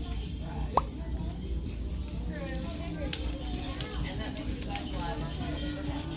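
Indistinct background voices over a steady low hum, with faint music and a sharp click just under a second in.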